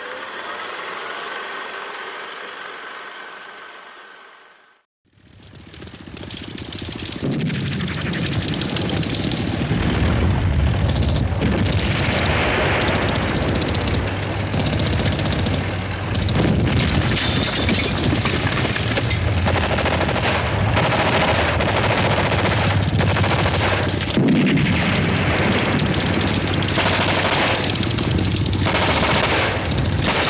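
A short logo sound fades out in the first few seconds. After a brief break about five seconds in, a battle soundtrack builds up: continuous machine-gun and rifle fire with a low rumble underneath.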